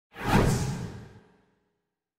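A whoosh transition sound effect for an animated title graphic: one swoosh that swells up quickly and fades away over about a second.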